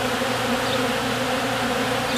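Many honey bees buzzing steadily in a low, even hum as they swarm over and feed on a tub of honey-wet comb scraps and cappings.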